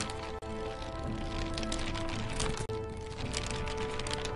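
Outro theme music with held notes and sharp percussion hits.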